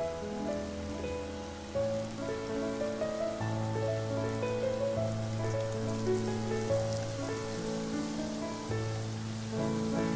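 Potato strips deep-frying in hot oil, a steady sizzle with fine crackles, under background music of sustained notes.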